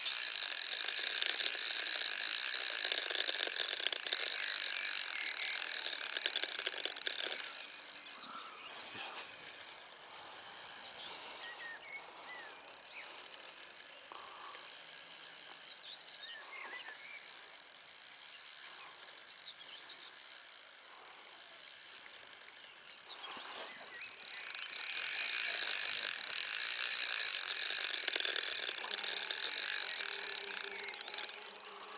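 Spinning reel ticking rapidly while a hooked fish is played on a bent rod, for about seven seconds, quieter for most of the middle, then ticking again for the last six seconds.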